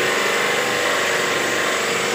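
Steady hiss and hum of a pressure washer, its motor-driven pump running while the brass sprayer nozzle jets water onto the evaporator coil of a split air conditioner's indoor unit, washing out a dirty coil.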